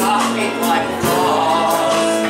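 A man singing a held line with live band accompaniment and backing voices in a stage musical number, the notes changing about a second in.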